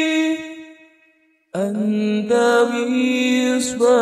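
Unaccompanied voice chanting a sholawat, an Arabic devotional song in praise of the Prophet Muhammad. A long held note fades out within the first second, there is a brief silence, then a new sung phrase starts abruptly about a second and a half in.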